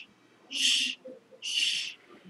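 Quick breathing close to a microphone: short hissing breaths, about one a second.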